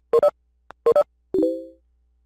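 Electronic notification chime from the video-conference software: two quick pairs of short beeps, then a short three-note chord that fades away.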